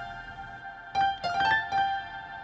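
Sampled piano melody from the FL Keys plugin, played back through reverb from the 2C Audio B2 plugin. A held note rings, then a quick run of four notes starts about a second in.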